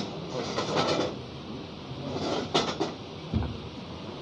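Rustling, scraping and knocking close to the table microphones as one man gets up from the seat and another sits down in front of them, with a low thump a little over three seconds in.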